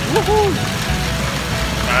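A short vocal sound about half a second long, then a voice again at the very end, over music and a steady outdoor background noise with a low rumble.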